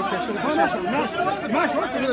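A large crowd of men talking over one another: a dense, steady hubbub of many voices at once, with no single word standing out.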